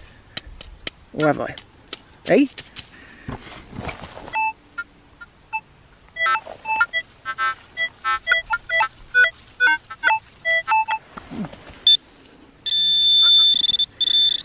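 Metal detector sounding many short beeps at several different pitches as its coil is swept over a freshly dug hole: target tones signalling buried metal. Near the end a hand-held pinpointer gives a steady high tone as it is probed into the hole over the metal object.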